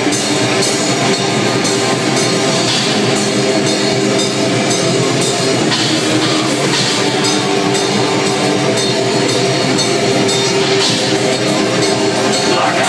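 Black metal band playing live and loud: distorted electric guitars over fast drumming, in an instrumental passage without vocals.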